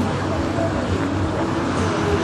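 Steady sound of car engines and road traffic, with voices talking in the background.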